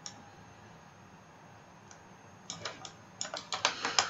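Clicks of a computer keyboard and mouse: a single click at the start, another about two seconds in, then a quick run of about a dozen clicks over the last second and a half.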